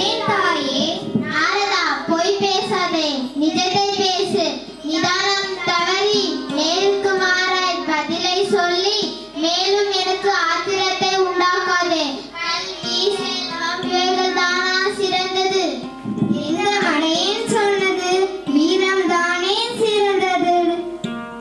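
A young girl singing a song into a microphone, her held notes wavering, over a steady musical accompaniment.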